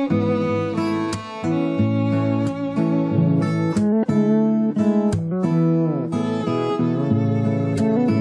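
Violin, fretless electric bass and acoustic guitar playing a slow gospel worship song together. The guitar strums chords under the bowed violin melody, and a note slides down about six seconds in.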